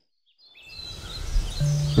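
Silence for about half a second, then outdoor ambience fades in with a few short, high bird chirps. A low, steady music note enters near the end.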